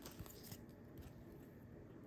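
Near silence: room tone with a few faint soft ticks from trading cards being handled.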